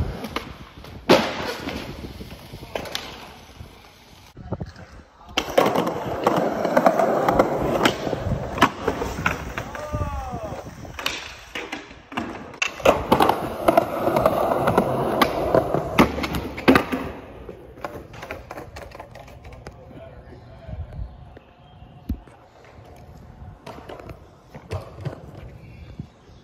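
Skateboard wheels rolling over concrete, with sharp clacks of the board striking the ground. The rolling is loudest from about five to seventeen seconds in, then goes quieter.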